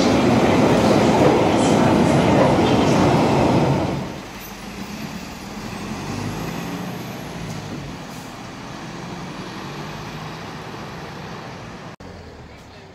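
A London Underground train arriving at a platform, its wheels loud on the rails for about four seconds. It cuts off abruptly to quieter street traffic with a lorry's engine running.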